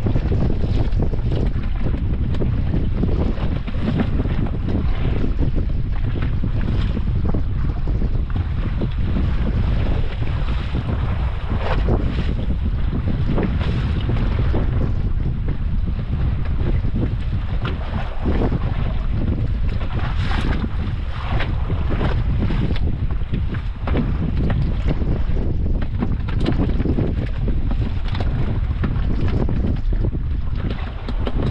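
Steady wind buffeting the microphone, with waves slapping and splashing irregularly against the hull of a small wooden fishing boat at sea.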